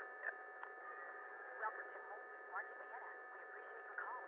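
A telephone line held open while the caller waits: faint steady hum tones with a few soft, indistinct voices in the background, all in the thin, narrow sound of a phone.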